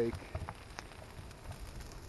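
Brush pile of wet, green tree cuttings burning: a soft steady hiss with scattered small crackles and pops. Light wind rumbles on the microphone.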